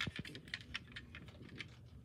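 Faint, irregular light clicks and taps from a hand handling a small diecast model car, several a second.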